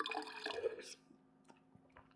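A person slurping a sip of red wine from a wine glass, a single liquid slurp about a second long.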